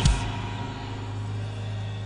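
Congregation shouting praise and cheering in a large hall, an even roar of many voices that eases slightly, over a steady low hum.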